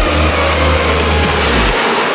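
Drift car's engine held at high revs during a slide, with an even noisy wash over it. A steady low bass tone runs under it while the dance-music drum beat is dropped out.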